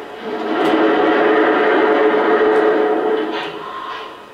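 A steam-whistle sound from the sound system of a Lionel O-gauge Southern Pacific GS-2 model locomotive, heard as one long chime blast of about three seconds that swells in and tapers off.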